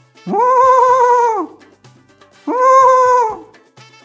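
Elephant trumpeting sound effect, two calls: each starts with a quick rise in pitch and then holds steady, the first about a second and a quarter long, the second a little shorter. Faint background music plays underneath.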